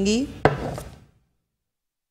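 One sharp knock from kitchenware being handled at a glass mixing bowl, with a short scrape after it, then the sound cuts out to dead silence.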